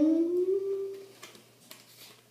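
A girl's drawn-out hum of hesitation, one held tone rising slightly in pitch for about a second, then dying away. A few faint clicks follow.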